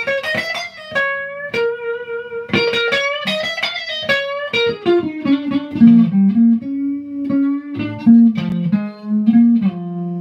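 Clean electric guitar, a Stratocaster-style solidbody, playing single-note pentatonic lines: quick runs of picked notes mixed with held notes, some bent or slid in pitch.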